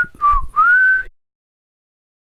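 A person whistling three quick notes in the first second. The last note is the longest and slides up before holding.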